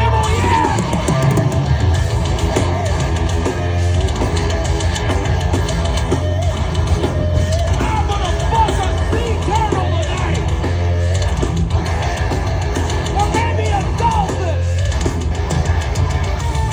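Heavy metal band playing live at concert volume, heard from the audience: distorted electric guitars riffing and bending over bass guitar and a pounding drum kit.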